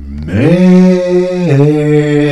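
A voice singing long held notes in a chant-like way: it slides up into the first note and steps down to a lower one about one and a half seconds in.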